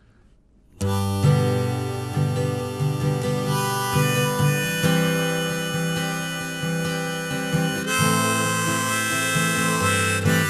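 Harmonica played in a neck rack, with acoustic guitar accompaniment, starting about a second in after near silence: the instrumental intro of a folk-blues song.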